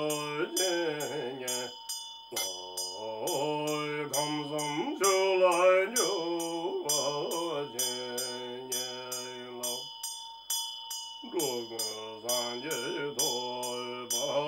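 A man chanting a Tibetan Buddhist mantra in a low voice, in long drawn-out phrases broken by short pauses about two seconds in and again near ten seconds. Under the voice, a Tibetan hand bell (drilbu) rings steadily with a quick, even run of strokes.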